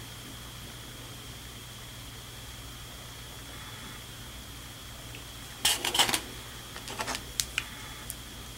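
A steady low hum and faint high whine run throughout. About five and a half seconds in there is a brief burst of rustling and clattering, then a few light clicks: handling noise as the paintbrush is set aside.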